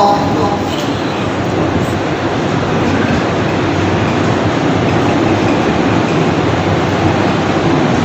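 Steady rushing background noise, a hiss with a rumble under it, with no voice and no clear pitch.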